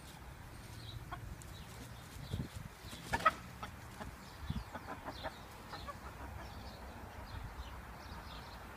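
Chickens clucking in short, scattered calls, the loudest about three seconds in, with a couple of low thumps among them.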